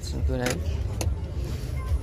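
A steady low rumble with a brief burst of a man's voice, and a single sharp click about a second in.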